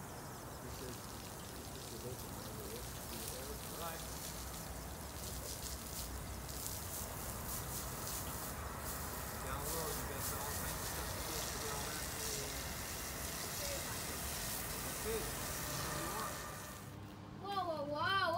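Water from a hose spraying and splattering onto wet concrete: a steady hiss with crackling spatter, under faint distant voices. Near the end it cuts off and clear voices begin.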